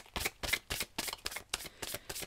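A deck of tarot cards being shuffled by hand: a quick, irregular run of short card clicks.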